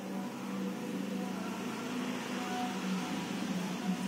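A steady low hum over background room noise, with no distinct events.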